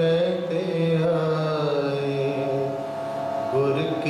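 Sikh kirtan: harmoniums hold sustained reedy chords while devotional singing rises and falls over them.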